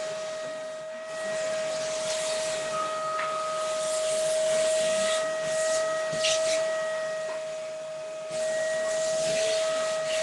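Vacuum cleaner running: a steady high motor whine over a rushing hiss that swells and drops, dipping briefly and coming back strongly near the end.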